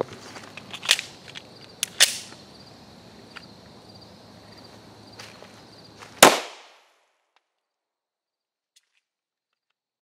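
A single .357 SIG pistol shot fired at close range, one sharp report about six seconds in with a short ringing tail before the sound cuts out. Before it come a few light clicks over a steady insect chirring.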